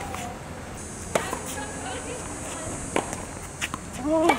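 Tennis ball struck by racquets during a baseline rally: a loud, close hit about a second in and a second hit about three seconds in, followed by lighter ball bounces or court footsteps near the end.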